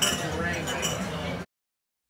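Bar-room ambience: background voices with glasses and dishes clinking, which cuts off abruptly to silence about a second and a half in.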